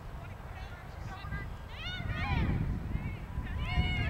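Shouts and calls from players and people along a lacrosse field: several short, high-pitched yells, the loudest near the end, over a low rumble that grows louder from about two seconds in.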